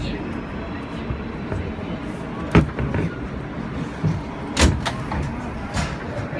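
Interior running noise of an R160B subway car pulling into a station: a steady rumble broken by three sharp clanks, the loudest about two and a half seconds in, the others near the end.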